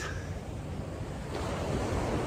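Ocean surf washing onto a sandy beach, a steady rush that swells a little in the second half, with wind rumbling on the microphone.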